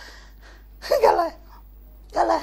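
A single short burst of a person's voice about a second in, without words, pitched higher than the talk around it.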